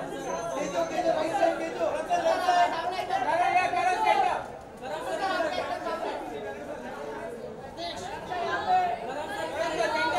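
Several people talking at once: overlapping, indistinct chatter of voices, with a brief lull about halfway through.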